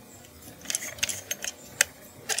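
Irregular small clicks and taps of a plastic microphone holder with a magnetic pop filter being handled in the hands, several sharp ticks close together in the second half.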